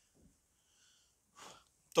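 Near silence in a small room, broken about one and a half seconds in by a short, faint intake of breath, just before a man starts speaking at the very end.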